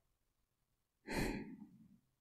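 A woman's soft sigh close to the microphone: one breathy exhale about a second in, fading away over about half a second.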